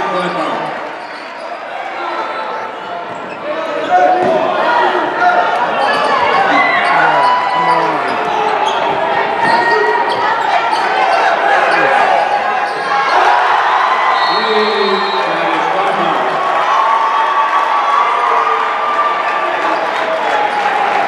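Basketball game sounds on a hardwood gym court: a ball bouncing and sneakers squeaking in short chirps, over steady crowd chatter. Quieter for the first few seconds, then louder from about four seconds in.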